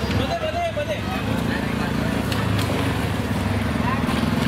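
A small motorbike engine running at low speed close by, its low pulsing rumble growing louder from about a second in. Voices are heard faintly in the first second.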